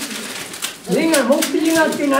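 A man's voice talking in a small room, starting about a second in after a brief lull.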